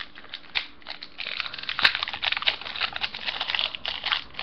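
Plastic-foil Yu-Gi-Oh booster packs and trading cards handled by hand, giving a steady run of crinkling and crackling with one sharp click about two seconds in.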